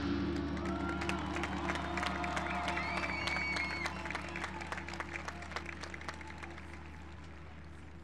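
The marching band's big closing hit dies away into a low held chord that slowly fades. Under it the stadium crowd applauds and cheers, with a few whistles in the first few seconds.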